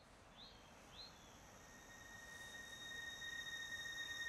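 Faint countryside ambience fading in: three short high bird chirps in the first second, then a steady high-pitched insect drone from about halfway on.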